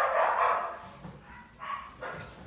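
A dog barking: a loud bark right at the start, and a fainter one near the end.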